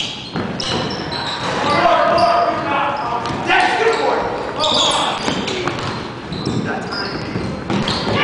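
Indoor basketball game: players' voices calling out indistinctly over a basketball bouncing on a hardwood court, echoing in a large gym.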